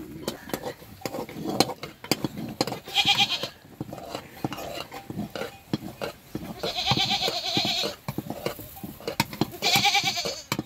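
Sheep bleating three times: a short call about three seconds in, a longer, wavering one around seven seconds, and another at the very end. Between them, repeated knocks and scrapes of a stick stirring thick porridge in a metal pot.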